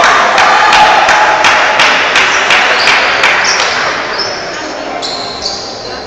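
Table tennis rally: the ball clicking off the table and bats about three times a second, stopping about three and a half seconds in, over voices in a large hall.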